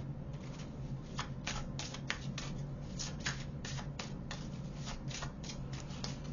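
A deck of oracle cards being shuffled by hand: a run of quick, irregular card flicks and snaps, several a second, over a low steady hum.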